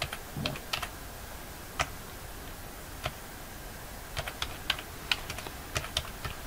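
Typing on a computer keyboard: a few scattered key presses, then a quicker run of keystrokes in the last two seconds.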